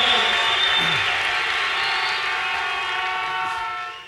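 A sustained chord of several steady tones, like a held electronic keyboard or organ pad, slowly fading out near the end, with faint voices beneath.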